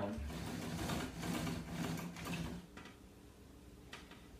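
Fabric rustling and handling noise as a hobbled Roman shade is pulled down by hand, a scratchy rustle with small clicks that dies away about three quarters of the way through.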